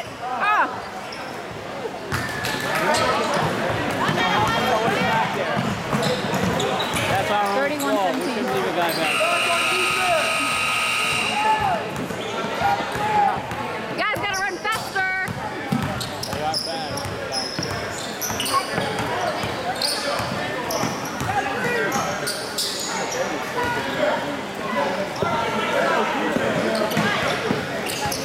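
Basketball game sounds in a gym: a ball bouncing on the hardwood floor as players dribble, with spectators talking. About nine seconds in, a steady horn tone sounds for over two seconds.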